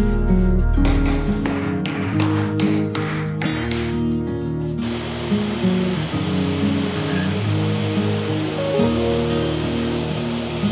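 Background music with a stepping melody. About halfway in, a DeWalt table saw starts running underneath it, ripping a plywood strip, and its even noise continues under the music.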